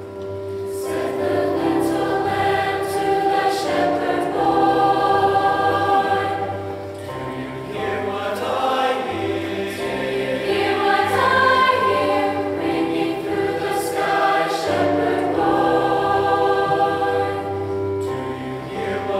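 Large mixed choir of boys and girls singing in harmony, long held chords changing every second or so.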